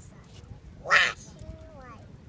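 A child's short, loud shriek about a second in, followed by quieter voice sounds.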